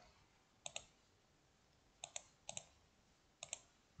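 Computer mouse clicking: a few short, faint clicks, most in quick pairs, spread over the few seconds against near silence.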